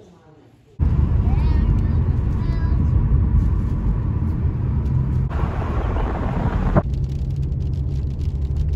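Steady low rumble of road and engine noise inside a moving car, starting abruptly about a second in. A stretch of louder hiss lasts about a second and a half in the second half and ends with a click.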